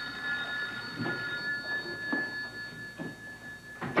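Desk telephone ringing: a steady, high, electronic-sounding ring of a few fixed pitches, held without a break.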